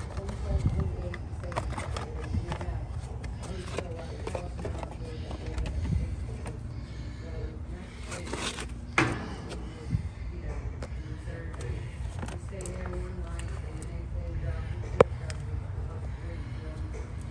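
Hands working on the condenser's wiring while fitting a new run capacitor: scattered clicks, rustles and scrapes over a steady low rumble, with one sharp click near the end.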